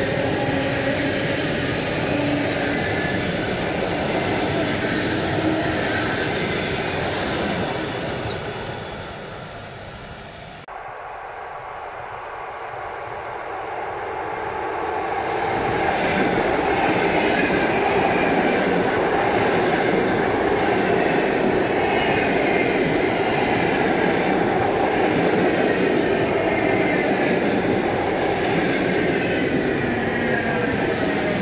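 ЭП2Д electric multiple unit passing close by at speed, with the steady rolling noise of its wheels on the rails. The noise fades, cuts off abruptly about ten seconds in, then builds again over a few seconds as another ЭП2Д passes and stays loud to the end.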